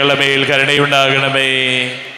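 A man's voice chanting a line of liturgical prayer into a microphone, held almost on one note and breaking off near the end.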